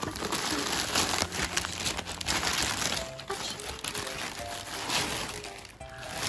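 Plastic mailing bag and wrapping crinkling and rustling as a parcel is pulled open, over quiet background music.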